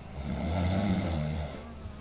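A man snoring: one long, loud, rumbling snore that fades out after about a second and a half.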